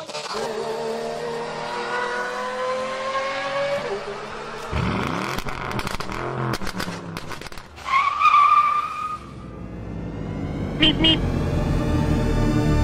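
Car sound effects: an engine accelerating with a slowly rising pitch, then a loud rush, then a tire squeal about two-thirds of the way in. Music swells near the end.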